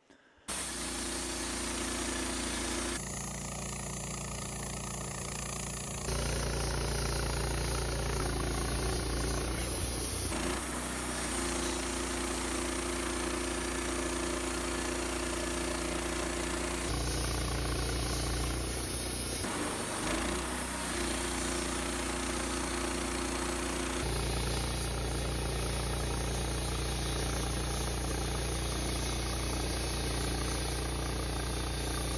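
Woodmizer LT15 Start portable band sawmill running steadily, its band blade sawing through a Douglas fir log. The sound shifts abruptly several times.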